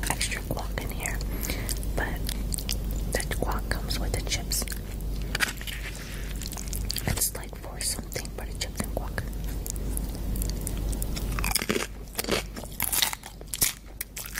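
A person chewing and crunching food, with many sharp, irregular crunches.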